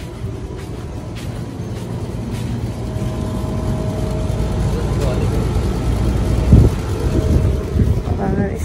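A motor vehicle's low rumble, growing steadily louder over several seconds, with a sharp thump near the end.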